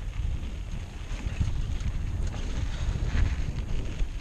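Wind buffeting a GoPro's microphone during a mountain-bike ride on a dirt singletrack: a gusty low rumble throughout, with scattered light crackle and rattle from the tyres and bike on the rough trail.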